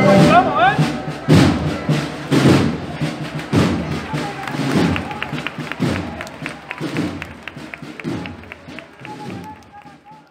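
A procession band's drums beat a slow marching cadence after the march ends, with a heavy bass-drum stroke about once a second and lighter quick taps between them. Crowd voices run underneath, and the whole sound gradually fades out.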